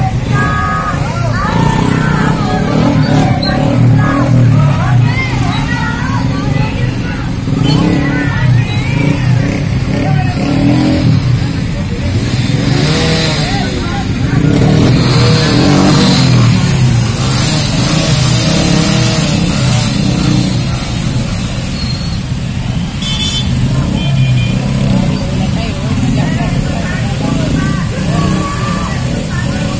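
Motorcycle engines running amid a large crowd of many people talking at once. A dense, steady mix with no pauses.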